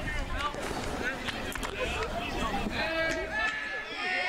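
Indistinct background voices of players and spectators calling out and chattering around a baseball field, several overlapping and none close to the microphone.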